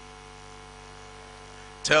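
Steady electrical mains hum made of several fixed tones, held at an even level, with a man's voice breaking in on a word near the end.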